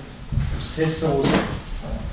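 Speech: a person talking, with short pauses between phrases.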